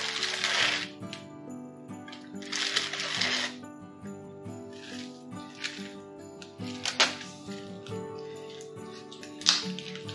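Graham crackers shaken out of a plastic bag into a bucket of mead, the bag rustling and the crackers falling in a few short bursts, with a sharp click about seven seconds in, over steady background music.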